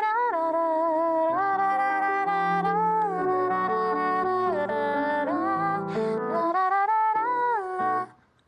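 A countertenor sings a wordless melody in a high falsetto voice, gliding between held notes, while accompanying himself with chords on a grand piano.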